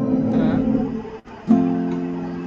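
Acoustic guitar being strummed: one chord rings and dies away just past a second in, then the next chord is strummed about a second and a half in, a change from one open chord to the next.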